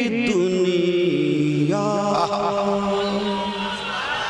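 A man chanting a naat unaccompanied into a microphone, holding long drawn-out notes and stepping from one pitch to the next.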